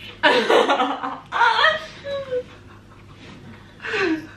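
People laughing, in two bursts in the first two seconds.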